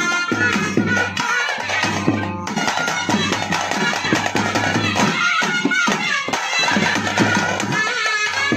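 Live South Indian traditional ritual music: drums beating in a steady rhythm under a wavering pitched melody line, with a steady low hum.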